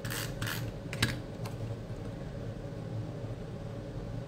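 Paper and cardstock being handled on a tabletop: a few short rustles and a light tap as stamped panels are slid into place on a card base, in the first second and a half. After that only a faint steady low hum remains.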